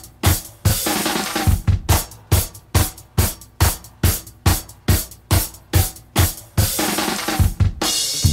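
Drum kit playing a steady beat on its own, bass drum and snare hitting about two to three times a second, with a cymbal wash about a second in and again near the end.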